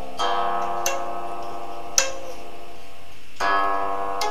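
Guqin (Chinese seven-string zither) played slowly and freely: plucked notes ring on with a long sustain, a sharp high pluck sounds about two seconds in, and a fresh cluster of notes comes in near the end.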